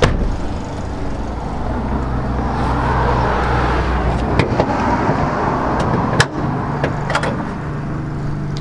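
A car door shutting with a sharp knock, then a few sharp clicks as the car's bonnet catch is released and the bonnet lifted, over a steady low rumble.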